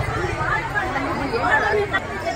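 Chatter: several people talking in the background, over a low steady rumble.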